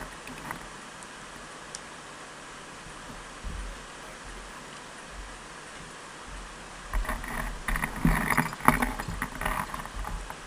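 Steady wind and water noise around a fishing kayak at sea. About seven seconds in, irregular knocks and rattles begin as the anchor chain and anchor are handled and wound up to the reel.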